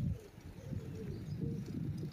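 A dove cooing several times in short curved notes, over a steady low rumble.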